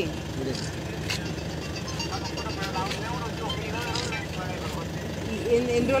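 Faint speech coming through a mobile phone's loudspeaker, over a steady low hum of an idling car inside its cabin.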